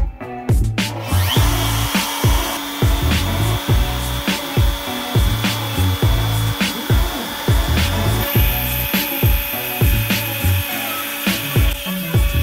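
A Makita router spindle on a CNC machine running and cutting clear acrylic: a steady high whine with hiss that comes in about a second in. It plays under background music with a heavy, steady hip-hop beat.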